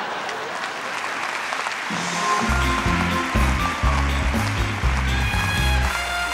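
Studio audience applause, then about two seconds in a live band starts up: electric bass and drums playing a rhythmic groove, with trumpet and keyboard lines above.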